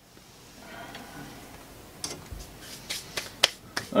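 Handling noise at a workbench: a lead jig head set down and hands brushed together, heard as a run of short sharp clicks and taps in the second half.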